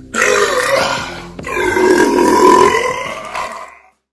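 A man's voice making two loud, drawn-out throaty noises in place of the MGM lion's roar: a short one, then a longer one that fades out near the end.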